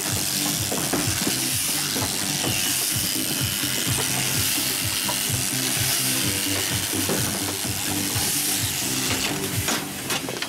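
Shearing handpiece running steadily as it cuts wool from a Merino ewe during crutching: a constant buzzing hum with rapid, irregular clicking and chattering from the cutter and comb.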